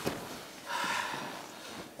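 A man's heavy exhale, a breathy unvoiced rush of air, a little after half a second in: hard breathing from the effort of a just-finished set of dumbbell raises. A short click comes right at the start.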